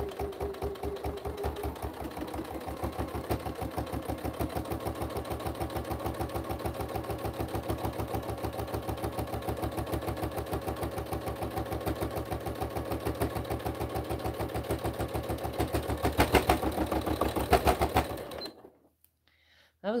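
Electric domestic sewing machine stitching steadily through a thick stack of quilted fabric and zipper binding, described right afterwards as a bit thick. It gets louder near the end, then stops abruptly a couple of seconds before the end.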